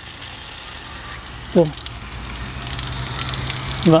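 Mains water from a garden hose running through a dismantled Karcher K2 pressure-washer pump and leaking out at the side of the housing, a steady hiss and splash, with a low steady hum joining about halfway. The leak means the pump cannot build pressure.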